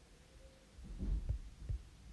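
A few faint, dull low thumps, a cluster about a second in and one more near the end.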